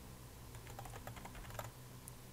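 Faint, quick keystrokes on a computer keyboard as a word is typed.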